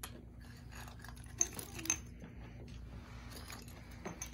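Hard seashells clinking and rattling against each other in a bin as a large dog noses through them, with two sharper clicks about one and a half and two seconds in.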